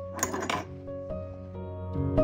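Soft background music of held, gently changing notes. Shortly after the start comes a brief rustle as hands handle the lace-and-fabric journal cover.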